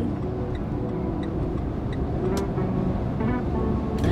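Steady road and engine noise heard inside the cabin of a moving car.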